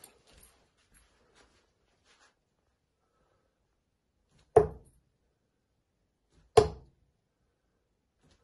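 Two steel-tip darts thudding into a Winmau bristle dartboard, one about four and a half seconds in and the next about two seconds later.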